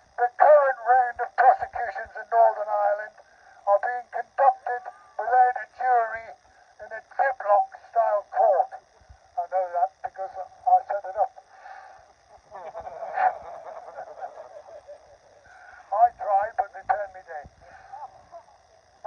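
A man's voice amplified through a handheld megaphone, reading a speech in short phrases; the sound is thin and narrow, with little low or high end.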